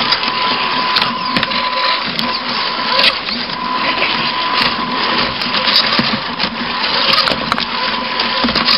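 RC rock crawler's electric motor and gearbox whirring steadily with a constant whine, heard from on board the truck, with scattered clicks and knocks as its tyres climb over river rocks.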